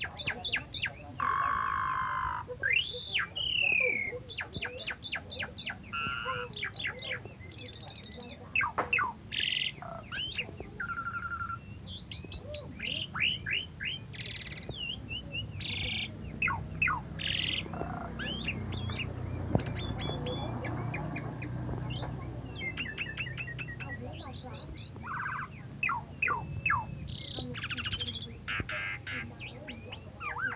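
Asian pied starling (jalak suren) singing a long, varied song of whistles, quick chirp series, rising sweeps and rattles, with hardly a break.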